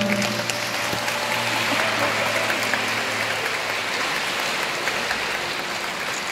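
Audience applauding in a concert hall: a dense, steady patter of many hands clapping.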